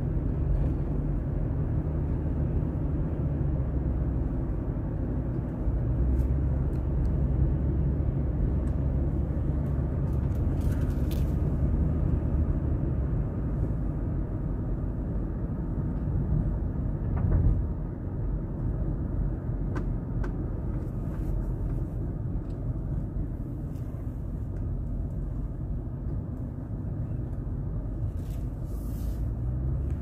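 A car driving, heard from inside the cabin: a steady low rumble of engine and tyres on the road, with one short louder thump about seventeen seconds in.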